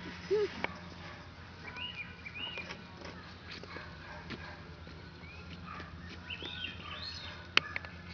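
Short, high chirping animal calls in two groups, about two seconds in and again near the end, over a steady low hum, with a brief lower call at the start and a sharp click near the end.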